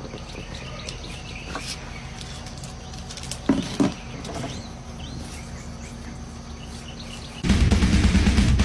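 A plastic bucket stuck over a puppy's head knocking dully twice, about three and a half seconds in, over outdoor ambience with faint bird chirps. Loud music cuts in near the end.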